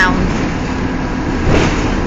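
Steady engine and road noise of a moving trolley, heard from inside its cabin, with a brief swell of noise about one and a half seconds in.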